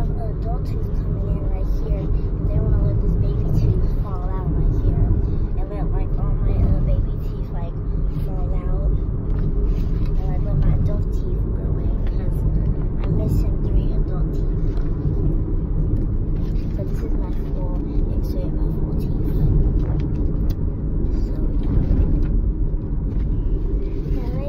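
Steady low rumble of road and engine noise inside a moving car's cabin, with faint voices murmuring underneath.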